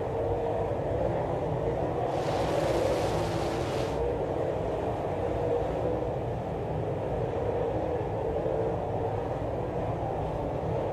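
Dirt late model race cars' V8 engines running at speed as the field circles the track: a steady engine drone, with a brighter hiss laid over it from about two to four seconds in.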